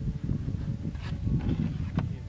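Wind buffeting the microphone: a steady, uneven low rumble, with a faint higher sound about a second in.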